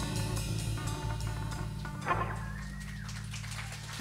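A live soul and blues-rock band's last chord ringing out and fading at the end of a song, with a low note held underneath. A brief higher sliding sound rises over it about halfway through.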